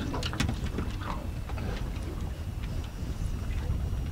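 Low, uneven rumble of wind on the microphone aboard a small fishing boat on choppy open water, with a few faint clicks near the start.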